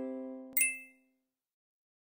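The last note of a short ukulele jingle rings out and fades. About half a second in comes a single short, bright ding sound effect that dies away within half a second.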